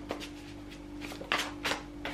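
Cards handled and flicked in the hands: a couple of short papery clicks about a second and a half in, over a faint steady low hum.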